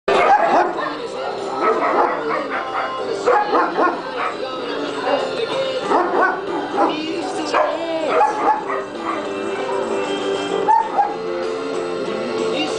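Dogs barking, yipping and whining in rough play, with music playing underneath that becomes clearer near the end.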